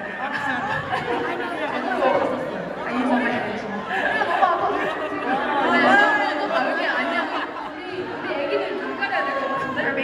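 Several women's voices talking over one another through microphones and a hall's speakers, with crowd chatter.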